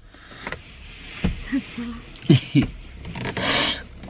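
Rubbing and rustling handling noise, loudest near the end, with a few short murmured vocal sounds about halfway through.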